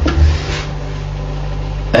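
A steady low electrical hum, with a short low thump just after the start.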